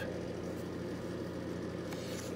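A steady low mechanical hum, with a faint rustle of a book page being handled near the end.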